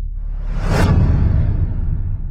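Logo-reveal whoosh sound effect that swells to a peak just under a second in and fades, over a steady deep rumble.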